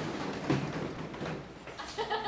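A class drumming their hands on the tables in a drum roll: a dense, rapid patter of taps that dies down near the end.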